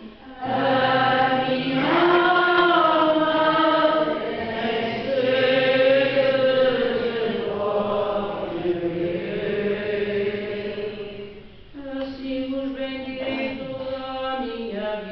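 Church choir singing the responsorial psalm between the Mass readings: slow, chant-like singing with long held notes, a brief break right at the start and another about four-fifths of the way through.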